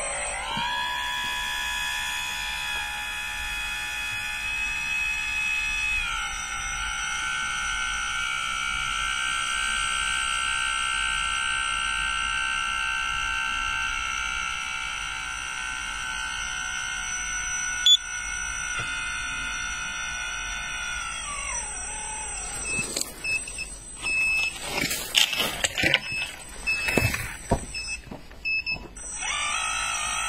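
Electric tipping motor of a radio-controlled model dump trailer whining steadily as the loaded bed lifts. Its pitch steps up about six seconds in, then falls away as it stops about twenty seconds in. Irregular knocks and rattles follow for several seconds, and the whine starts again at the very end.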